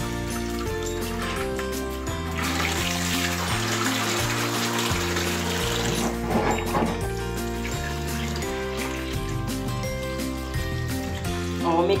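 Background music playing over water running and splashing as peeled black-eyed beans are rinsed in a plastic bowl and drained through a metal colander in a sink. The water is loudest from about two to six seconds in.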